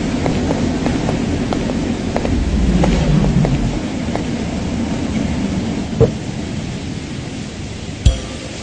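A car pulling up and stopping, a low engine and tyre rumble that swells about three seconds in and then eases off, with a single sharp knock about six seconds in.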